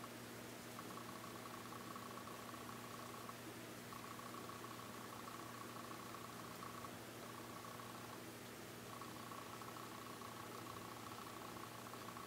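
Faint room tone: a steady hiss with a low electrical hum, and a faint high whine that drops out and comes back several times.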